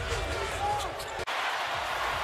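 Basketball game sound on a broadcast: a ball bouncing on the hardwood court over the arena's background noise. The sound breaks off abruptly a little past halfway, where the footage is cut, and resumes with a different background.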